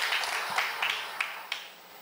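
Scattered audience applause with sharp individual claps, dying away about a second and a half in.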